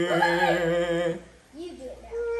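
A person humming with closed lips, holding a steady note for about a second, then a short rising-and-falling hum near the end.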